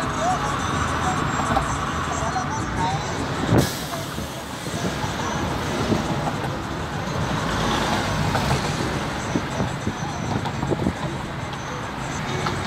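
Road and traffic noise from a moving car, a steady rumble and rush of tyres and passing vehicles, with a sharp knock about three and a half seconds in.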